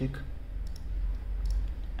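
A few sharp computer mouse button clicks, spaced apart, over a steady low hum.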